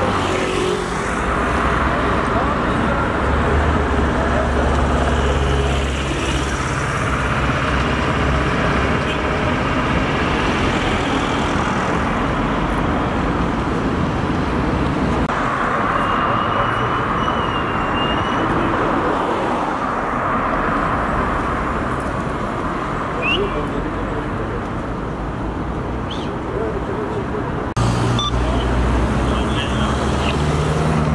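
Continuous highway traffic noise of vehicles going by. A steady low engine hum comes and goes, as from a vehicle idling close by.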